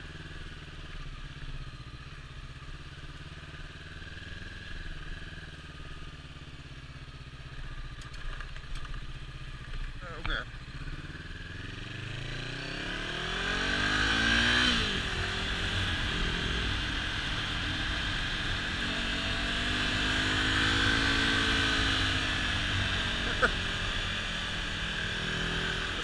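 Honda CB500F parallel-twin motorcycle engine ridden slowly at first. From about twelve seconds in it revs up, its pitch climbing, then drops sharply near fifteen seconds. It then settles into a steady, louder run with rushing wind and road noise.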